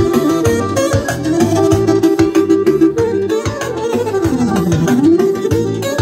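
Live Albanian folk music from a Korg electronic keyboard and clarinet, amplified through PA speakers over a steady programmed beat. The melody holds, then dips in pitch and climbs back near the end.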